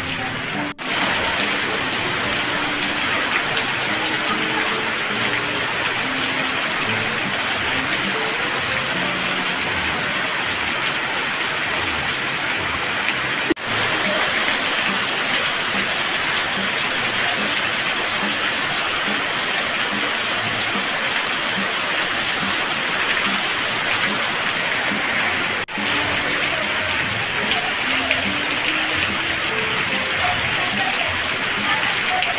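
Heavy rain pouring down, a dense steady hiss of water on the street and roofs, broken by brief dropouts about a second in, midway and near the end.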